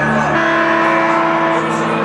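Live rock band playing amplified guitar and bass, holding sustained chords that change to a new chord about half a second in.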